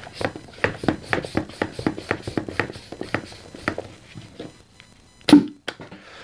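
Light plastic clicks and taps, about three or four a second, as a foam Nerf Titan missile is worked off the launcher's plastic barrel and the parts are handled, then one louder knock a little after five seconds in.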